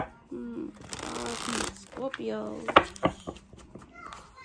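A deck of tarot cards being shuffled by hand: a brief rush of riffling about a second in and several sharp taps of the cards near the end, with a voice murmuring in the background.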